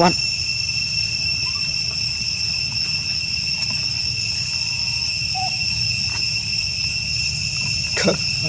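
A steady, high-pitched insect drone made of two even tones, over a low steady rumble, with a couple of faint short chirps in the middle.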